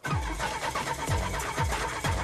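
1986 Oldsmobile's starter cranking the engine in a steady, repeating rhythm without it catching: the car won't start.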